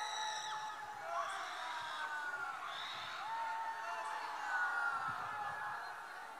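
Many voices screaming and wailing at once, overlapping high cries that rise and fall, fairly faint. These are devotees in a trance at an exorcism gathering, whom the preacher treats as ghost-afflicted.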